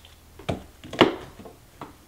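Tarot cards being handled on a table: two short knocks about half a second apart, the second louder, then a faint tap near the end.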